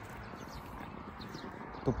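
Footsteps of a person walking, under a steady outdoor background hiss and rumble on a phone microphone. A man's voice starts just before the end.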